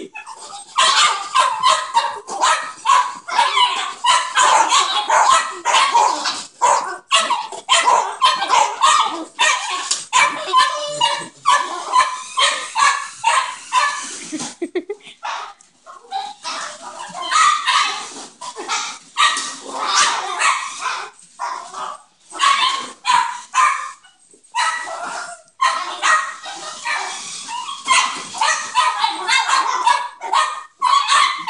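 Several small dogs barking and yapping rapidly and almost without a break at a remote-control toy car, high-pitched and agitated, with a couple of brief lulls.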